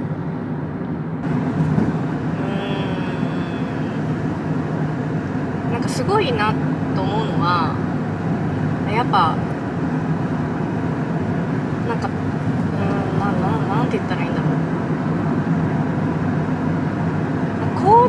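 Steady road and engine noise heard inside the cabin of a moving car, with a few brief, faint vocal sounds partway through.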